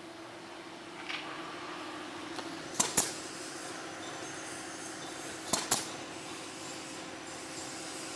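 Steady workshop hum at one pitch, with two short sharp double clicks, about three seconds and five and a half seconds in.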